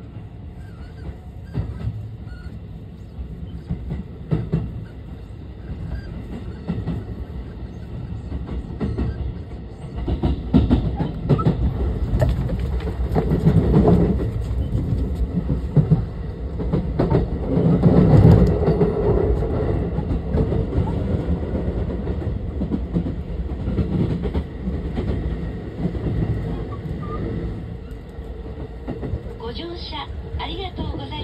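Running noise of a JR West 223 series 2000-subseries trailer car (SaHa 223-2096), heard inside the car: a steady rumble of wheels on rail with frequent short clicks, growing louder about ten seconds in, loudest around the middle, then easing off.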